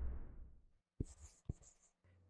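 A whooshing rush of noise fading away over the first half-second as the title card comes up, then near silence broken by two faint clicks about half a second apart.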